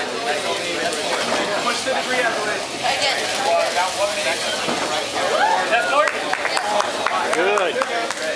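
Indistinct voices of people talking around the competition field, with a few short sharp knocks about two-thirds of the way through.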